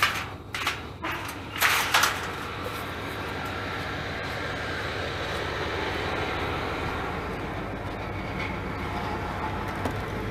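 A few crunching footsteps on dry, sandy ground, then a steady rumble of a van engine idling.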